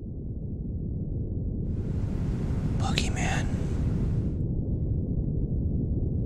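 Dark, low ambient drone swelling in and growing steadily louder, with a breathy whisper rising over it about two seconds in and fading out before four and a half seconds.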